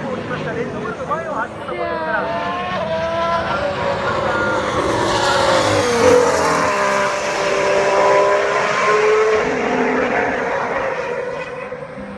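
A Ferrari Formula One car's turbo V6 engine passing on track, its tone gliding and swelling to the loudest point about six seconds in, then fading away. Spectators talk over the opening seconds.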